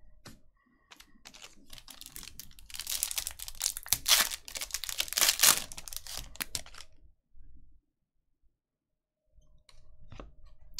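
Foil wrapper of a trading-card pack being torn open and crinkled in the hands, a dense crackling that is loudest in the middle and stops about three-quarters of the way through.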